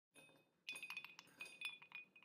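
Ice cubes dropped into a cut-glass rocks glass: a quick run of light clinks starting under a second in, each with a brief ringing glass tone.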